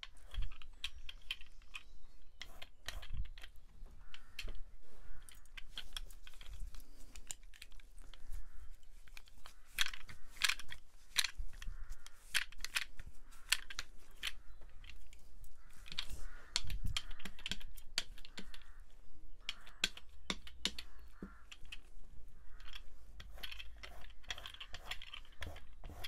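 Irregular light clicks and taps, some sharp, coming in uneven clusters with faint rustling between them.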